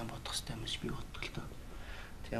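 A man's voice, soft and low, close to a whisper, in a pause between louder speech.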